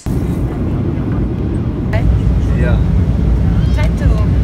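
Airliner cabin noise in flight: a loud, steady low rumble of engines and airflow heard from inside the cabin, with faint voices in it.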